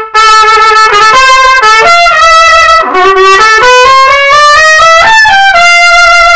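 Trumpet played loud at full forte: a slow phrase of connected, held notes that climbs higher in the second half. A passage marked dolce is deliberately blown at full volume, not sweetly or quietly.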